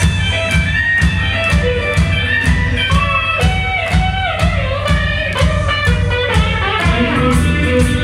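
Live blues band playing: an electric guitar lead with bent, gliding notes over bass guitar and a steady drum beat of about two hits a second, heard from the audience in a small club.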